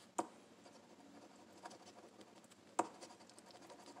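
A coin faintly scraping the coating off a scratch-off lottery ticket, with two sharp ticks, one just after the start and one near three seconds in.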